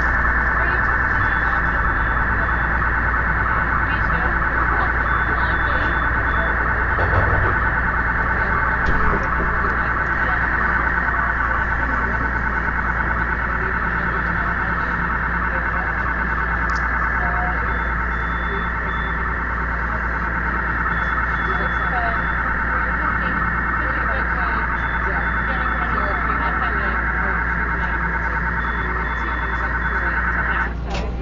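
Digital telemetry data blaring through a subway car's passenger PA speakers as a loud, steady, dense electronic buzz, with a low hum underneath. The noise is a fault: the car's telemetry data line has been routed into the passenger audio line.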